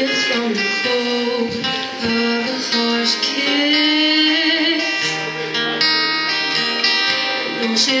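Acoustic-electric guitar strummed through a PA in a live song, with a woman's voice holding a long wavering note around the middle.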